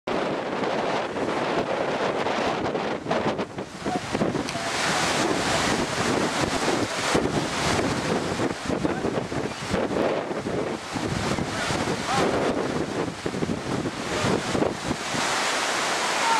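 Strong storm wind gusting past and buffeting the microphone: a continuous rushing noise that swells and dips with the gusts.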